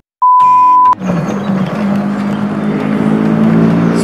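A loud, steady test-tone beep with the colour-bar test pattern, lasting under a second. Then an engine runs steadily, with a low even hum under some noise.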